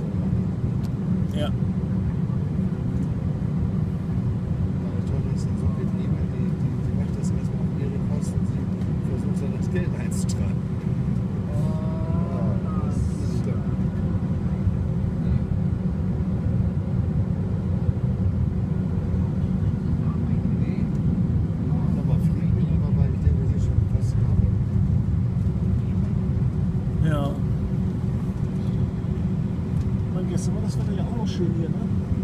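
Steady low rumble of a jet airliner's cabin while taxiing, with a thin steady hum above it and a slight swell in loudness past the middle.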